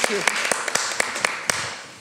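Audience applauding, the clapping thinning out and fading away over the two seconds, with a few last separate claps about a second and a half in.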